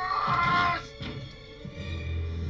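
Dramatic orchestral film score: a loud, high, wailing held note cuts off abruptly about 0.8 s in, and low, quieter sustained tones follow.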